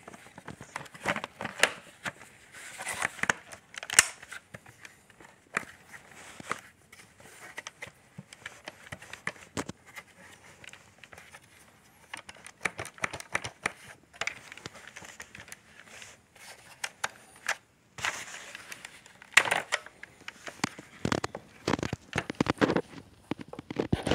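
Hard plastic parts of a Shark Apex DuoClean vacuum being handled and fitted together by hand, with the motor off: irregular clicks, knocks and rattles of plastic on plastic, the sharpest click about four seconds in and a burst of them near the end, as the cover is lined up to click into place.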